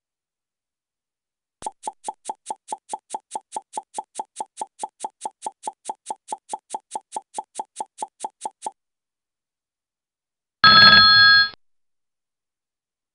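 Quiz countdown timer sound effect: a rapid, even ticking, about four or five ticks a second, for about seven seconds. It is followed near the end by a short, louder, bright ringing tone that signals time is up.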